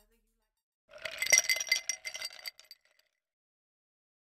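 Glass clinking: a quick run of bright clinks with ringing tones, starting about a second in and dying away within two seconds.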